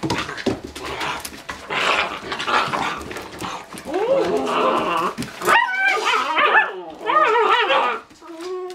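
Great Dane puppies playing rough, scuffling at first. From about halfway through comes a run of high, wavering whines and yelping barks.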